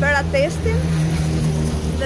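A motor vehicle engine running steadily, a low hum with a held tone, after a woman says a word at the start.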